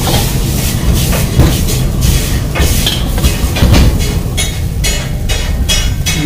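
Steel ladle scraping and clanking in a large iron wok as hakka noodles are stir-fried over high heat, with frying sizzle and a steady low rumble underneath. The ladle strikes come in rapid, irregular clatters.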